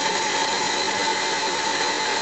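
Electric water pump running steadily, a constant whirring noise with a steady whine through it; it has just been switched on by plugging it into the wall outlet.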